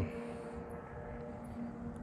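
Low steady rumble of distant road traffic, with a faint steady hum.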